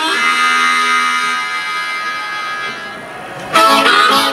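Amplified blues harmonica holding one long chord that slowly fades, then breaking back into quick, loud phrases near the end.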